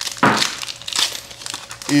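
Foil wrapper of a Pokémon TCG booster pack crinkling as it is torn open by hand, with a sharp rip about a quarter second in and rustling after it.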